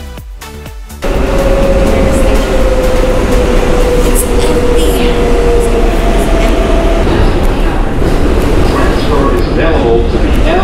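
Loud running noise inside a New York City subway car on the 7 line: a steady rumble and rattle with a whine that slowly falls in pitch. Background music cuts off suddenly about a second in.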